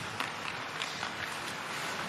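Live ice hockey rink sound: a steady wash of crowd and arena noise with a few sharp clicks of sticks and puck on the ice.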